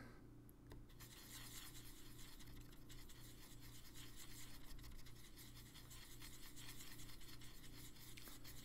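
Faint, fast scratching of a paintbrush stirring and working red paint in a well of a plastic palette, mixing Blood Red into Deep Red. A steady low hum runs underneath.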